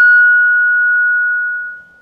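Steady beat tone of about 1.5 kHz from a homebrew SSB receiver's loudspeaker, made by an RF signal generator's test carrier tuned just off the receiver's frequency. The tone is loud and a little harsh with overtones, then fades down over the last half second as the stage gain is turned back.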